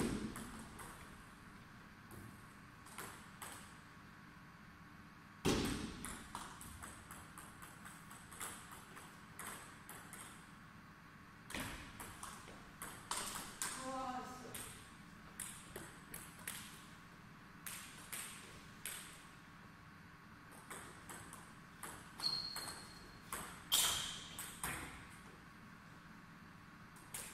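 Table tennis rallies: the ball clicks in quick runs off rackets and table, with pauses between points. There is a louder thud at the start and another about five seconds in, and brief high squeaks near the end.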